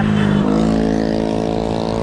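Steady, even drone of a motor vehicle's engine in traffic, holding one pitch, over a low rumble of wind and road noise.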